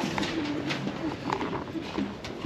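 Background murmur of several people talking, with a few light clinks of glassware or crockery.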